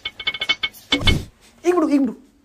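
A rapid run of ratchet-like clicks, about ten a second, stops a little under a second in. A single heavier knock follows, and a short vocal sound comes near the end.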